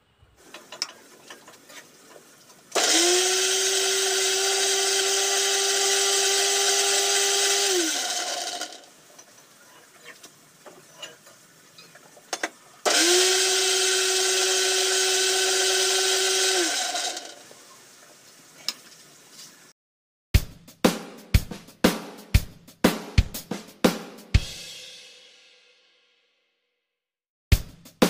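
Electric mixer-grinder run in two bursts of about five and four seconds, a steady, loud motor whine that sinks in pitch as the motor spins down after each. Near the end, a drum beat starts.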